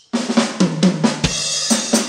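A live band kicks into a song, coming in suddenly just after the start. Drum kit hits with snare and cymbals play over bass guitar and keyboards.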